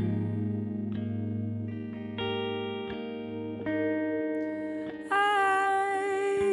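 Instrumental passage: a Hohner Pianet electric piano and an electric guitar play through delay and reverb effects, with a new note or chord struck about every second. It grows louder near the end.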